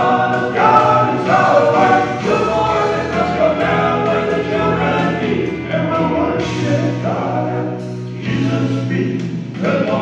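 Male gospel quartet singing together into handheld microphones, amplified through the PA, with sustained notes and a steady low bass part underneath.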